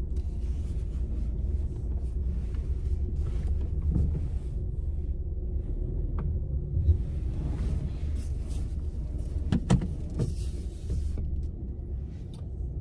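A car's engine running at low speed, heard from inside the cabin as the car is reversed a short way in a parking lot. The rumble is steady, with a couple of brief knocks about ten seconds in.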